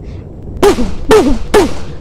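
Three sharp gunshot-like 'pum' bangs about half a second apart, each with a short falling vocal tone, imitating pistol shots.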